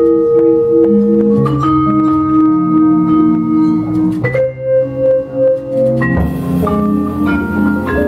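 Vibraphone played with mallets in a slow jazz ballad, long ringing chords struck one after another, the held notes pulsing in waves. Guitar and upright bass accompany underneath.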